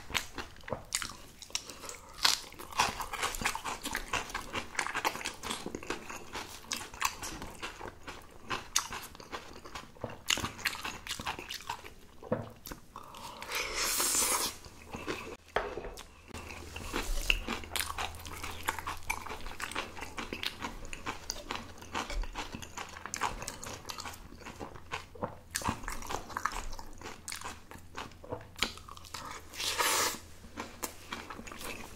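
Close-miked chewing of spicy napa cabbage kimchi with rice and Spam: irregular wet crunches and bites throughout. A longer, louder rush of sound comes about thirteen seconds in.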